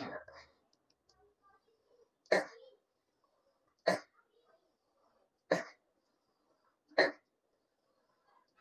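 A man clears his throat, then makes four short, sharp hiccup-like vocal grunts, one about every second and a half, with near silence between them.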